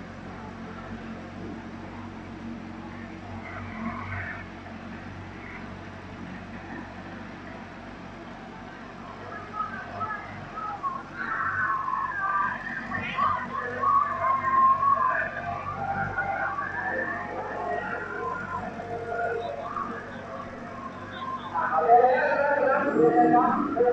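A steady low hum for the first half, then background voices talking from about ten seconds in, louder than the hum.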